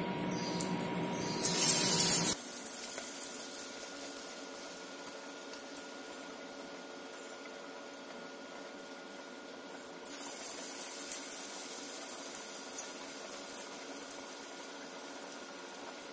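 Banana-flower vadai deep-frying in hot peanut oil: a loud burst of sizzling about a second and a half in, then a steady, fainter sizzle with scattered crackles that rises a little past the middle.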